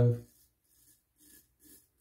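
Straight razor scraping stubble through shaving lather on the cheek: faint, short strokes in a quick even rhythm, about three in the second half. A man's voice trails off at the very start.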